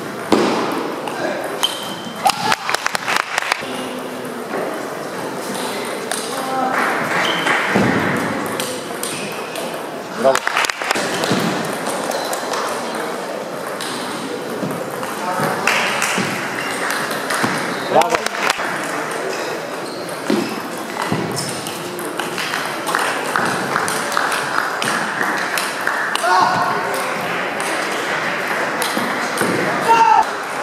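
Table tennis ball being hit back and forth in rallies: quick runs of sharp clicks from ball on bat and table, in a large hall, with pauses between points.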